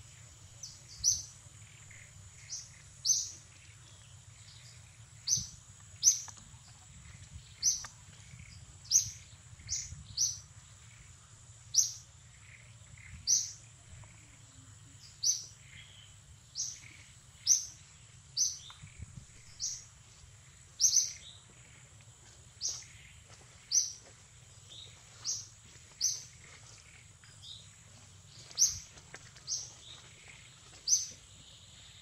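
A bird calling with short, high chirps about once every second or so, some louder than others, over a steady, high-pitched insect drone.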